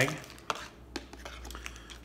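Small handling sounds of a plastic zip-top bag being opened and earbuds pulled out: a few short clicks and faint rustling.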